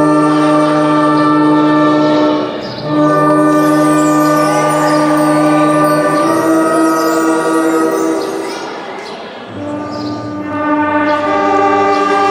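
Marching band brass section (trumpets, trombones, saxophones and sousaphones) playing long held chords, with a brief break about two and a half seconds in. Around eight seconds in the chords fade down, a low chord comes in near the tenth second, and the band swells back up toward the end.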